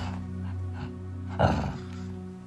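A Shih Tzu gives one short vocal burst, a bark-like grunt, about one and a half seconds in, over steady background music.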